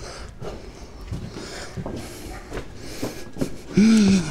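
Footsteps on a stone floor with scattered light knocks and rustling as someone walks through a doorway into a church. A voice starts right at the end.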